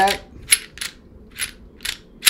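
Sharp metallic clicks from an M&P Shield 9mm pistol as its slide is pushed back onto the frame during reassembly: four short clicks at uneven spacing.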